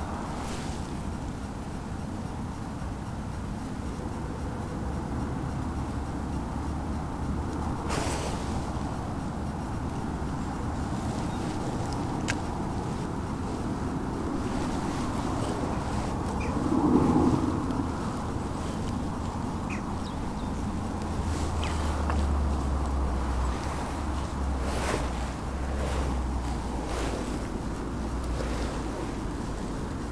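Steady low rumble of distant road traffic, with wind on the microphone, a few sharp clicks from handling the rod and reel, and a short louder sound about halfway through.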